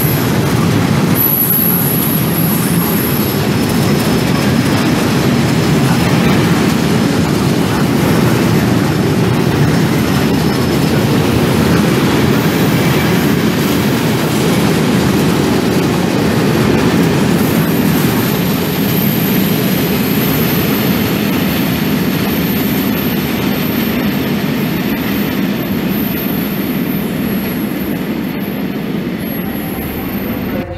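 Freight train of tank wagons rolling past at speed: a steady, loud rumble of wheels on rails. A thin high squeal comes in at the start and again from about halfway through.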